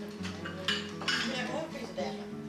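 Crockery clinking and knocking several times as bowls and cups are handled on a table, with music playing underneath.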